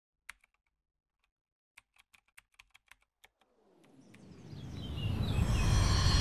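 Intro sound effect: a single click, then a quick irregular run of about ten typing clicks like a computer keyboard. From about halfway through, a noisy swell with a deep low end rises steadily in loudness and leads into music.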